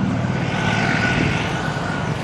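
A motor vehicle passing close by in street traffic: a steady rushing engine and road noise with a faint high whine.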